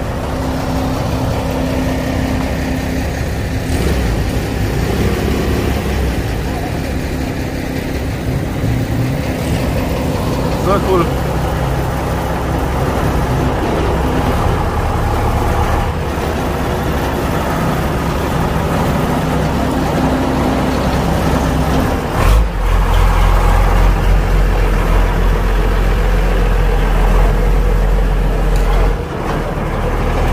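Vintage Mercedes-Benz Unimog's engine running as the truck rolls past at low speed. Its low rumble becomes much louder about two-thirds of the way through as it comes close, then drops away shortly before the end.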